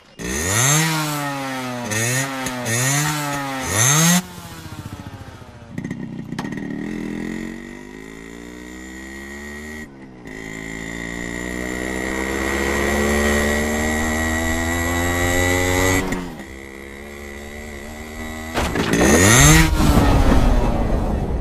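Motorcycle engine revved hard in four sharp blips. It then pulls away in one long rising acceleration with a brief dip about ten seconds in, eases off, and revs hard again near the end as it builds speed for a jump.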